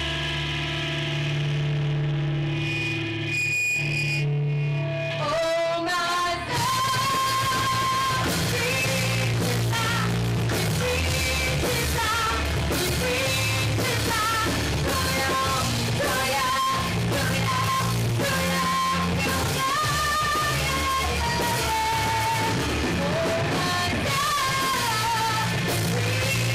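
Live rock band with keyboard, bass guitar and drum kit playing. Held chords for about the first six seconds, then the full band comes in with a woman singing the melody.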